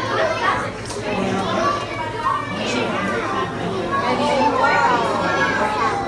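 Indistinct chatter of a crowd of visitors, mostly children's voices talking and calling out, with no single clear voice up front.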